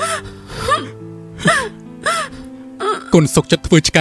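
A person sobbing in about four short, gasping cries over soft, sustained background music; speech starts near the end.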